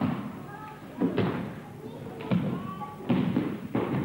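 Repeated heavy thuds of bodies hitting a training mat as aikido partners are thrown and take breakfalls, about five impacts roughly a second apart.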